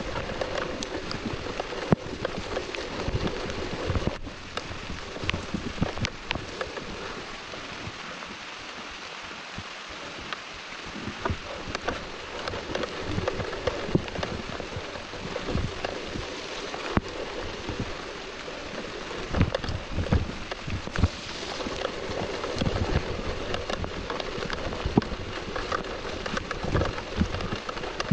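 Mountain bike riding down a rough forest trail in the rain: a steady hiss of rain and tyre noise, with frequent knocks and rattles as the bike goes over rocks and roots.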